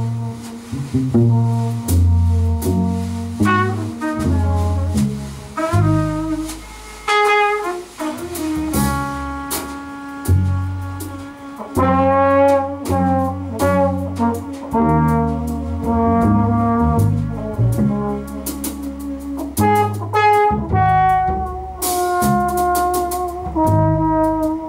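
Jazz quartet of trumpet, trombone, bass and drums playing: the trumpet and trombone hold long notes together over low bass notes, with cymbal strokes running through.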